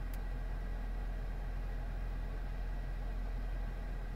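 Steady low hum of background room noise, with one faint click just after the start.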